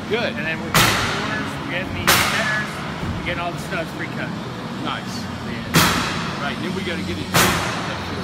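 Four loud, sharp bangs at irregular intervals, each ringing out in a long echo through a large open shop building: nails being driven into wall framing by the framing crew.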